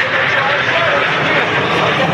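Loud, steady jet engine noise from a formation of four jet aircraft flying overhead, with a voice faintly audible over it.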